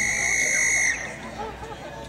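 A single steady high electronic beep lasting about a second and cutting off sharply, the arena's start signal telling the horse and rider they may begin the jump-off. Faint voices murmur after it.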